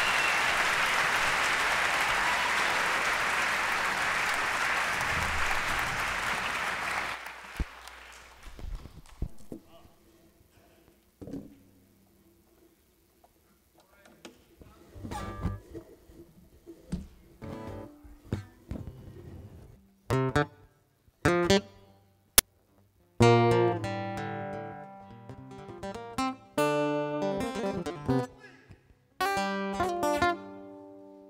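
Audience applause that cuts off about seven seconds in, followed by acoustic guitars plucked in sparse single notes and short phrases with silences between them, becoming louder and fuller after about twenty seconds.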